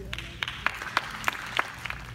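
Light, scattered applause: a few people clapping in sparse, uneven claps.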